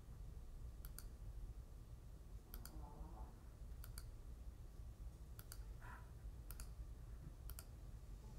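Faint computer mouse clicks, about six of them spaced a second or so apart, each a quick double tick of press and release.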